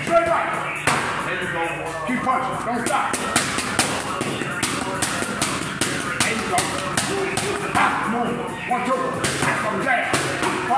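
Boxing gloves smacking into focus mitts in quick combinations, several sharp hits a second in runs.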